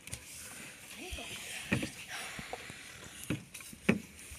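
Small magnet-loaded toy cars being handled and rolled on a tabletop, with a few sharp knocks against the table or each other: one a little under two seconds in, one past three seconds, and a loud one just before the end, over a steady hiss.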